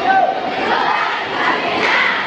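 A large cheering squad shouting a bench cheer together, many voices at once and steadily loud throughout.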